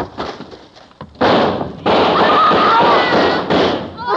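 Radio-drama sound effect of a long burst of gunfire: a dense, continuous volley beginning about a second in and lasting over two seconds, the police guns cutting the fleeing woman down.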